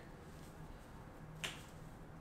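Quiet room tone with a faint steady hum and a single short, sharp snap about one and a half seconds in.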